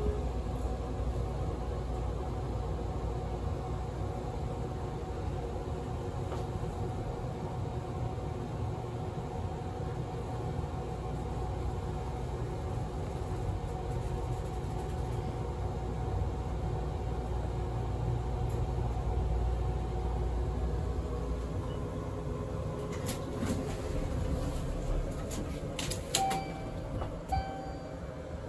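Mowrey hydraulic elevator running upward, heard from inside the cab: a steady low rumble with a faint hum from the pump and car travel. The rumble eases off about 22 seconds in as the car stops. It is followed by a run of clicks and knocks and two short tones as the doors open.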